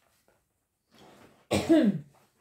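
A woman's single short cough near the end, its voiced tail falling in pitch.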